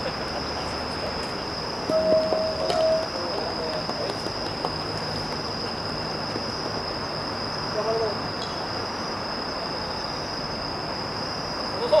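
Distant shouts of baseball players: one long held call about two seconds in, a shorter call near eight seconds, and voices again at the end, over a steady hiss with a constant high-pitched whine.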